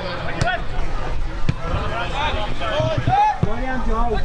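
Footballers' shouts and calls across the pitch, the words unclear, over a steady low rumble. Two sharp knocks come in the first second and a half.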